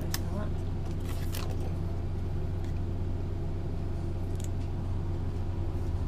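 A steady low hum, with a few short clicks and rustles as a plastic folding drone is handled over its foam case, about a second in and again near the middle.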